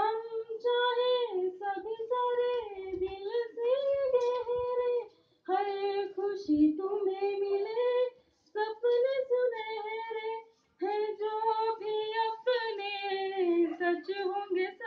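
A woman singing a Hindi farewell song solo without accompaniment, in long held phrases broken by short pauses.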